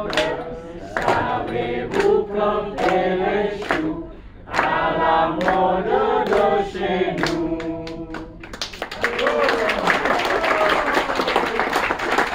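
A group of voices singing a chant together, with hand claps on the beat about once a second. The singing stops at about eight seconds, and a burst of fast, dense clapping follows.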